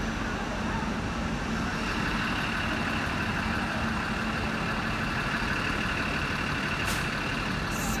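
Trains running at a railway station platform: a steady hum of train machinery, with a higher steady tone joining it about a second and a half in, and a brief click near the end.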